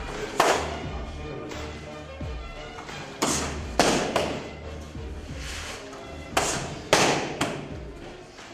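Kicks landing on a trainer's handheld kick pad: about six sharp smacks at uneven intervals, one about half a second in, two between three and four seconds, and three close together near the end. Background music plays underneath.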